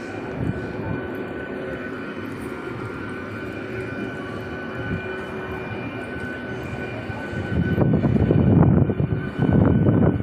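Passenger train moving alongside the platform: a steady drone with a thin steady whine over it, growing louder and rougher from about eight seconds in.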